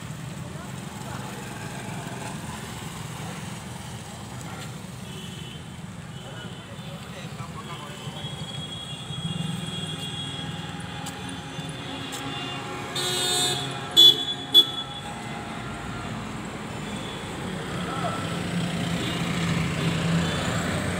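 Road traffic passing on a town street, mostly motorbikes and small vehicles, making a steady hum. A vehicle horn honks about two-thirds of the way in, ending in two short sharp toots, the loudest sound. The traffic grows louder near the end.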